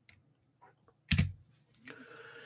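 Computer mouse clicks: one sharp click about a second in, then two faint ticks near the end, as the presentation moves on to the next slide.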